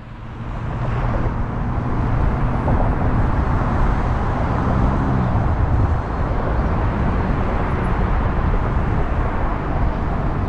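Car driving through city traffic: road and wind noise swell about half a second in as it crosses an intersection and picks up speed, then hold steady, with the engine's low hum underneath.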